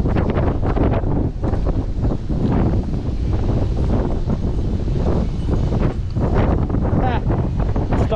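Strong wind buffeting the camera microphone: a loud, steady low rumble that rises and falls slightly.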